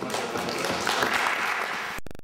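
Audience applauding: a dense, even clapping that cuts off suddenly at the end.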